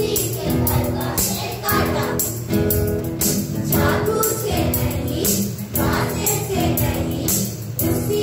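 Group of children singing a Hindi action song in chorus over music with a steady, jingly percussion beat.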